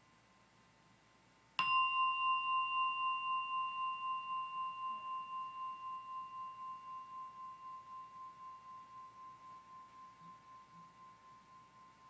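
A meditation bell struck once, about a second and a half in. Its clear, high ring wavers as it fades slowly over about ten seconds, and it is still faintly sounding at the end. It is rung as a guided-meditation cue to listen to the stillness as the sound dies away.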